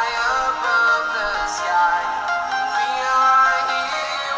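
Music played through the Lepow DualViews Pro portable monitor's built-in dual 2-watt stereo speakers in a speaker test. It plays steadily, with a moving melody and little bass.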